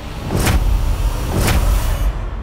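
Dramatic TV-serial sound effects: a deep low rumble with two swishing whooshes about a second apart, laid under close-up reaction shots.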